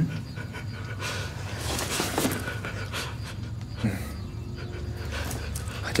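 A man panting heavily in ragged breaths over a low steady hum.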